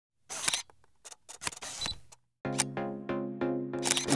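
Logo intro sound design: a scatter of camera-like clicks and glitchy noise with a brief high beep, then about halfway through a sustained synth chord comes in with quick, regular ticks over it.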